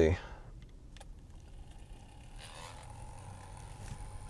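Faint whir of a small plug-in USB phone fan with soft plastic blades spinning up and running, preceded by a single sharp click about a second in.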